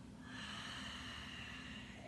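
A woman taking one long, audible breath that starts a moment in and lasts about a second and a half.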